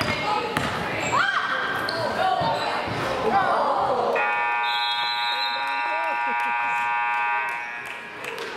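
A basketball dribbling on a hardwood gym floor, with sneaker squeaks and crowd voices. From about four seconds in, the gym's scoreboard buzzer sounds one steady tone for about three seconds, marking the end of a period.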